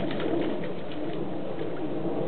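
Shallow creek water running steadily, with a few small trickling splashes in the first second.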